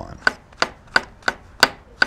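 Chef's knife slicing cremini mushrooms on a cutting board: six sharp, even knife taps, about three a second.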